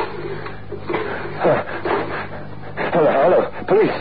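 A man's short wordless vocal sounds, about a second and a half in and again near the end, over a steady low hum from the old radio recording.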